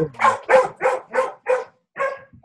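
A dog barking over and over in short, sharp barks, about three a second.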